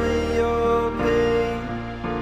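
Male voice singing a slow ballad, holding long notes over sustained backing chords and a deep bass that changes chord about halfway through.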